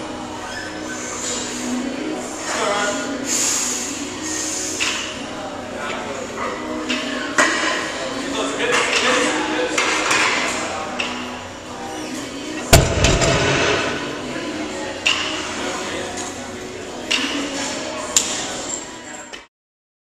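A loaded barbell of about 475 lb coming down on a lifting platform after a deadlift, one heavy thump with a low rumble about two-thirds of the way in, over a steady background of voices. There are a few lighter metal clinks along the way.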